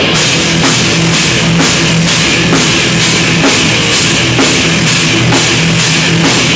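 Live thrash metal band playing loud and dense: distorted electric guitars, bass and a drum kit, with cymbal hits about twice a second over a repeating low riff.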